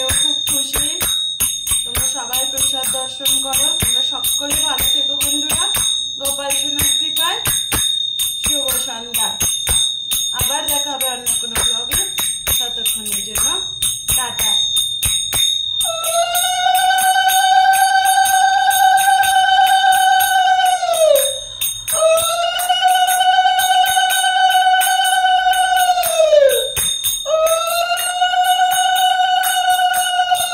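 A hand bell rings steadily in repeated strikes under a voice for about the first half. Then a conch shell is blown in long, steady blasts of about five seconds, each dipping in pitch as it dies away: two full blasts, and a third begins near the end.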